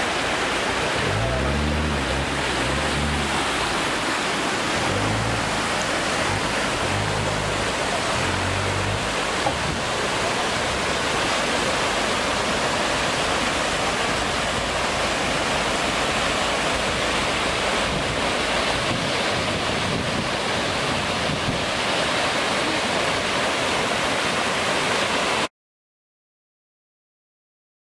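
Shallow mountain stream rushing over rocks and spilling over a small weir: a steady, full rush of water that cuts off suddenly just before the end.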